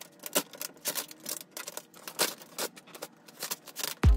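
Vinyl wrap film crackling and clicking in quick, irregular snaps as it is pulled and stretched by hand over a car fender, with faint music underneath.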